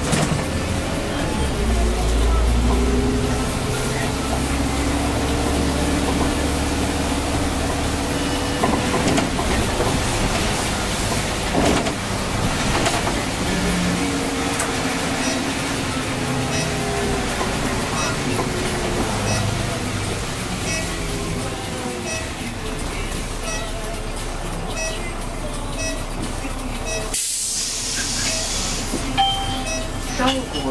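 A city bus driving, heard from inside at the front: its drive whine rises and falls in pitch as it speeds up and slows, over steady road rumble. Near the end comes a short burst of hiss.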